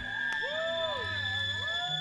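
Electronic tones left ringing as the full band drops out: a wobbling pitch that rises and falls about once a second, over two steady high held tones and a low hum.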